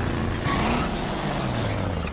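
Cartoon sound effect of a large off-road vehicle's engine running hard as it bounces over rough ground, its low drone dropping slightly in pitch near the end.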